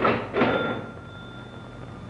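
Mechanical cash register being rung: two quick clanks of the mechanism, then its bell rings on clearly for about a second.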